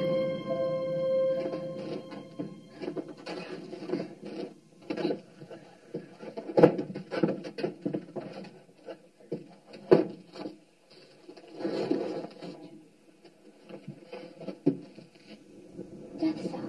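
A held note of a horror film score fading out over the first two seconds, followed by scattered irregular knocks, taps and scuffs, a few of them sharper clicks.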